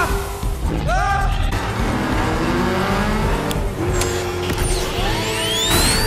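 Film soundtrack mix of car engine and whooshing sound effects layered with music, full of short swooping pitch glides and a long rising sweep near the end.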